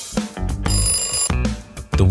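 Background music with a plucked bass and guitar line. About three-quarters of a second in, a high, bright ringing sound effect sounds for about half a second: the quiz's time-up alarm as the countdown runs out.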